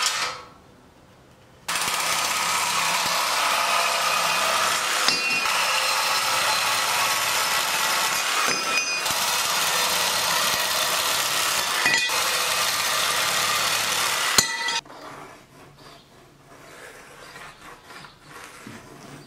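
Reciprocating saw cutting through a length of metal strut channel: a loud, steady, harsh saw noise that starts about two seconds in and stops about thirteen seconds later, with a couple of brief dips. Quieter handling clatter follows.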